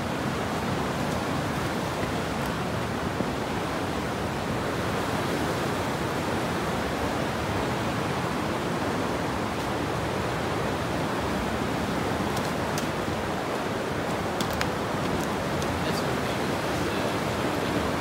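River water rushing steadily over rocky rapids, an even, unbroken noise.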